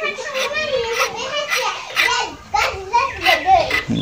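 A child talking in a high-pitched voice throughout.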